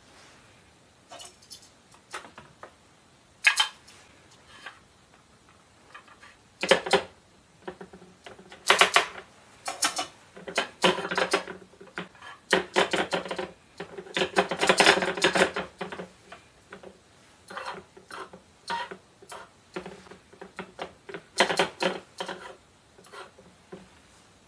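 Plastic toy cookware and play-food pieces clicking and clattering against a plastic toy kitchen as they are handled, in irregular bursts of light knocks and rattles.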